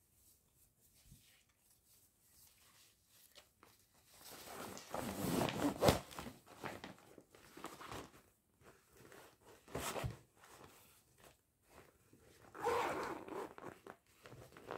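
A clear plastic mesh zip pouch being handled and unzipped: crinkling plastic and a zipper. There is a longer stretch of rustling about a third of the way in, a sharp click partway through, and another short rustle near the end.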